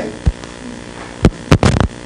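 Steady electrical mains hum, broken by a few sharp knocks, the loudest about one and a half seconds in.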